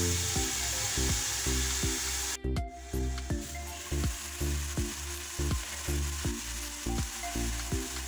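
Diced chicken and onion frying in oil in a non-stick wok: a steady sizzle. It cuts out for a moment about two and a half seconds in and comes back softer. Background music with a repeating low bass line plays throughout.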